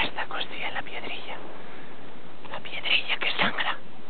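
A person whispering close to the microphone in two short breathy stretches, over a steady background hiss.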